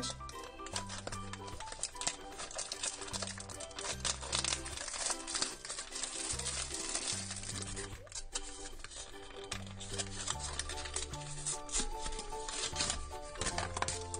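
Foil blind-bag wrapper crinkling and tearing as it is pulled open by hand, with many small crackles. Background music with a plodding bass line plays throughout.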